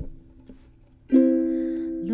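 Ukulele chord fading out, a brief near-silent pause, then a fresh chord strummed about a second in and left ringing.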